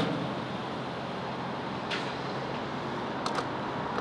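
Gas station fuel pump dispensing into a car: a steady rushing hum, with a few faint clicks about two and three and a half seconds in.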